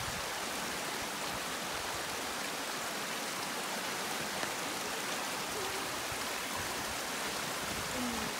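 Muddy floodwater from heavy rain rushing down a narrow lane as a torrent, a steady, unbroken rush of water.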